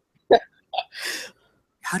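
A person's brief vocal sounds: a short voiced blip, then a breathy exhale, with speech starting again near the end.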